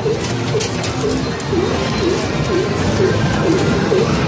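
Arcade machine sound: a short dipping electronic tone repeating about twice a second over a steady arcade din, with the crackling rustle of a plastic bag of candy being handled.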